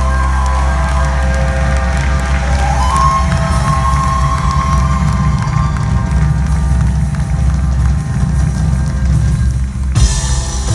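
Live rock band and vocal group performing, with heavy bass and drums and a long held sung note in the middle.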